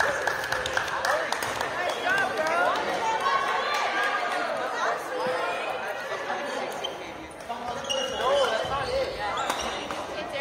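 Badminton rally sounds in a large gym: rackets hitting the shuttlecock with sharp taps and sneakers squeaking on the hardwood court, with players' voices in the hall.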